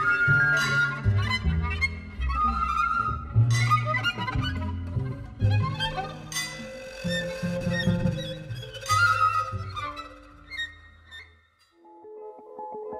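Recorded ensemble music in a Chilean folk-jazz vein: violin and other held melody notes over a walking double bass line, with sharp strokes of percussion. The passage dies away to near silence just before the end.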